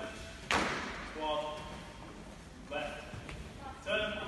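A drill squad's feet stamping down together once, about half a second in: a single sharp crash that rings on in the large hall. Short shouted drill calls follow, about a second and a half apart.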